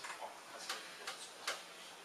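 A few short, sharp clicks, about two a second.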